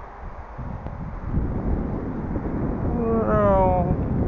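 Wind buffeting the microphone: a low rumble that grows stronger from about half a second in. Near the end comes a brief pitched sound, under a second long, that slides downward.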